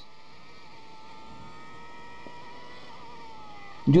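Faint, steady engine-like drone with a thin, slightly wavering whine, the soundtrack of a 360° race-car video playing from a handheld iPod Touch's small speaker.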